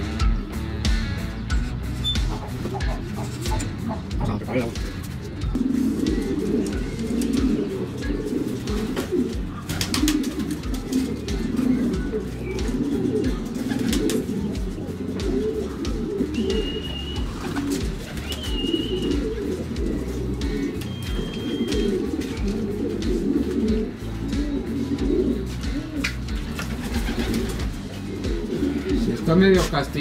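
Many domestic pigeons cooing together in the loft, a dense and continuous rolling chorus. A few short high whistles come about halfway through.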